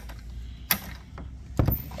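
The plastic sterile handle of a Dr. Mach surgical light head is twisted and lifted off its mount. A sharp click comes about a third of the way in, and a dull knock near the end.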